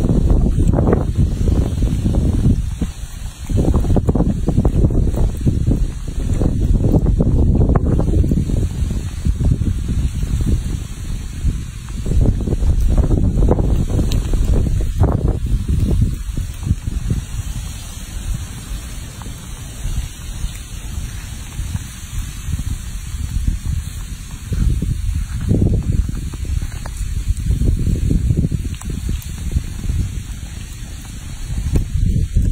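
Wind buffeting the microphone in uneven gusts, a loud low rumble that eases for a while after the middle.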